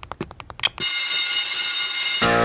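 Rapid, even ticking, about seven ticks a second. About a second in it gives way to the loud, steady ring of an electric bell, like a school bell.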